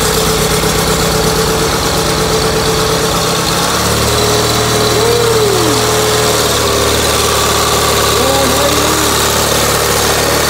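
Gravely 817 garden tractor engine running. Its note changes about three and a half seconds in, going from choppy to a steadier, even hum.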